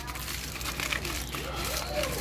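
Aluminium foil crinkling in irregular rustles as hands press and smooth a foil wrap.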